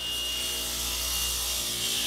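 Table saw cutting through a wooden strip: one steady, even run of blade and cutting noise over a low motor hum.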